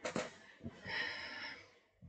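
A woman's quiet, breathy laugh: a short sharp catch at the start, then a longer hissy breath out that fades away.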